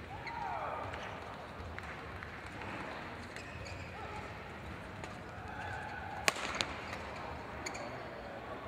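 Badminton rally: sharp racket strikes on the shuttlecock, the loudest a pair of quick cracks about six seconds in, with short squeaks of court shoes on the mat, over background chatter in the hall.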